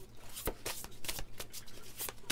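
Faint, scattered clicks and taps of tarot cards being handled, about half a dozen short sharp strokes.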